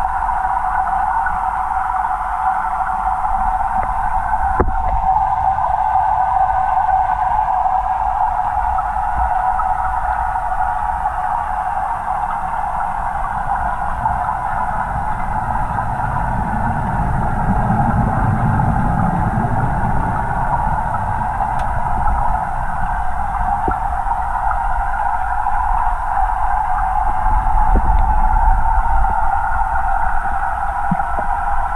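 Steady underwater noise inside a large aquarium tank: a constant hum with a low rumble beneath it, swelling gently in the low range about halfway through, with a few faint ticks.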